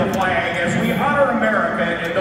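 A man speaking over an arena public-address system.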